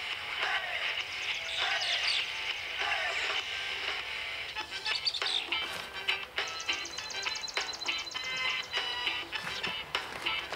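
Background music score: a melodic passage that turns into a quicker, rhythmic pattern of repeated short notes about halfway through.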